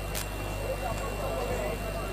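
Steady low hum from the microphone and sound system, with faint murmuring voices behind it and a brief rustle just after the start as the handheld microphone is passed from one person to another.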